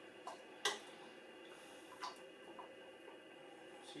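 A few light clicks of a stirring rod tapping against a glass beaker while working silk into a dye bath, the clearest just under a second in and two more about two seconds in, over quiet room tone.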